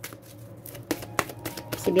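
A deck of tarot cards being shuffled by hand: a run of quick, irregular card clicks and flicks.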